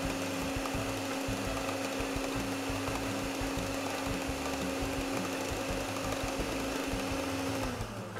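Electric stand mixer running at a raised speed, its twin beaters whipping a cream-and-gelatin cheesecake filling in a stainless steel bowl. A steady motor whine that cuts off just before the end.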